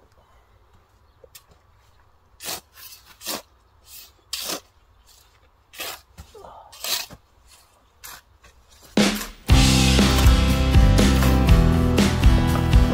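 Shovels scraping into sandy soil and tossing it onto black plastic mulch film, a string of short separate scoops, burying the film's edges to hold it down. Loud background music with a steady beat comes in about nine and a half seconds in.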